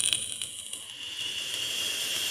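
Edited-in hissing noise effect with a steady high whine through it. It starts abruptly, dips, then slowly grows louder.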